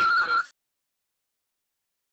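A steady, high-pitched whistling tone over rougher background sound cuts off abruptly about half a second in, followed by dead silence.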